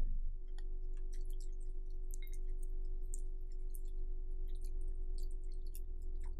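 Milk poured from a carton onto chocolate cornflakes in a glass bowl: scattered small ticks and crackles from the wetted flakes. A steady faint tone and a low hum run underneath.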